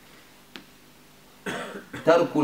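A man coughs once near the end, after a single small click about half a second in; otherwise only faint room tone.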